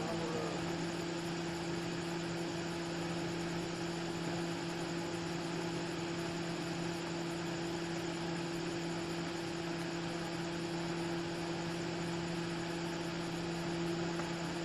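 Steady low machine hum, a constant drone with a fainter overtone above it, over an even background hiss; it does not change over the whole stretch.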